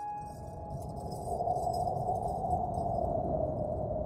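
Ambient electronic soundtrack: a sudden onset with a brief high tone, then a sustained hissing drone that slowly sinks in pitch over a low rumble.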